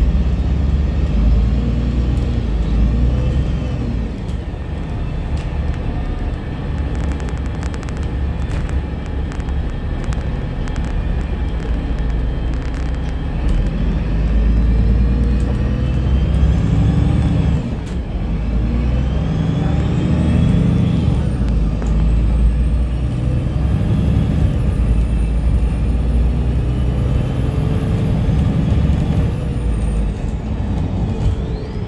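Ride inside a bus with a Mitsubishi SiC-VVVF electric traction inverter: a steady low rumble of drive and road, over which the inverter's high whine glides up in pitch as the bus speeds up and down as it slows, several times. One long rising whine holds high from a little past the middle and drops near the end.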